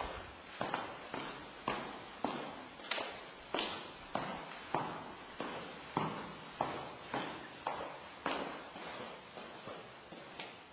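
Footsteps of a person walking down a staircase, an even tread of a little under two steps a second, each step echoing. The steps grow fainter near the end.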